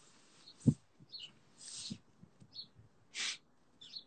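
A few faint, short, high bird chirps, with a soft thump under a second in and a short hiss a little past three seconds.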